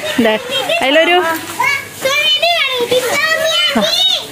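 Children's voices calling out and talking loudly while they play, in quick high-pitched bursts.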